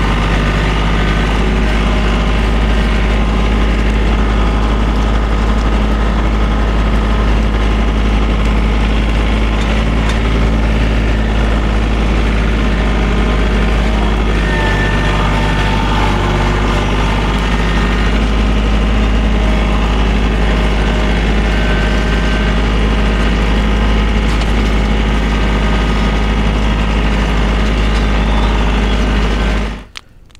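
TYM T413 sub-compact tractor's diesel engine running steadily close by, with a slight shift in pitch about halfway through. The sound cuts off suddenly near the end.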